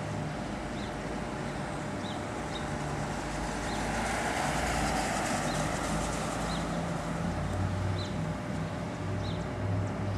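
Outdoor street ambience: a steady low hum and rush that swells for a few seconds in the middle, like a vehicle passing, with a small bird chirping about once a second.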